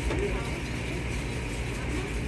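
Steady background noise of a commercial kitchen: an even low hum and hiss, with a faint voice just at the start.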